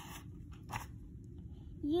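A paper page of a picture book being turned: a soft rustle at the start and a brief crackle a little under a second in. A child's voice starts near the end.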